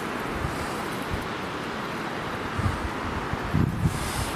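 Wind blowing across the microphone: a steady rushing noise with a few low buffets in the second half.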